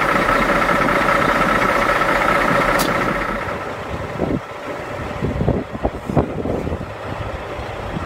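Semi truck's diesel engine running at low speed, with a steady high whine for the first few seconds. It then drops to a rougher idle with irregular knocks. The narrator calls it a funny sound, almost like a ping, and puts it down to the high altitude.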